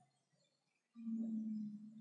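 Near silence, then about a second in a man's short, steady hum at one pitch, held for about a second.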